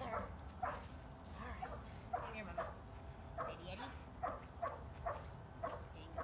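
A dog barking in a steady string of short, high yips, two or three a second.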